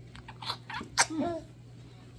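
Two short, sharp, sneeze-like bursts of breath from a child, about half a second apart, each followed by a brief bit of voice, over a steady low hum.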